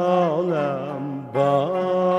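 A singer in traditional Uzbek song style holds long, ornamented notes over a steady low accompaniment. Near the middle the phrase ends briefly and a new sustained phrase begins.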